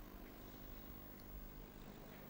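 Near silence: faint, steady room tone of an ice-rink arena with a low hum.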